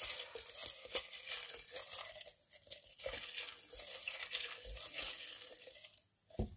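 Crumpled paper slips crinkling and rustling as a hand rummages among them in a small pot, with many small crackles and a brief quieter spell about halfway through.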